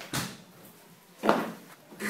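Two short thuds about a second apart, the second one louder.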